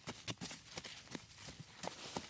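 Rapid, irregular knocking and clicking of hard objects striking, about five strokes a second, some with a short hollow ring.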